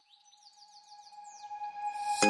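A quick run of bird-like descending chirps, about six a second, over one steady high tone. It fades in from near silence and grows louder toward the end.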